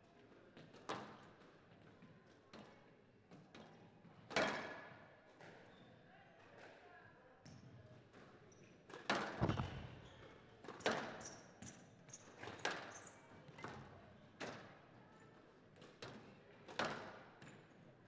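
Squash ball struck by racket and smacking off the court walls, about a dozen sharp knocks at irregular intervals, each ringing briefly in the hall; the loudest come about four and nine seconds in.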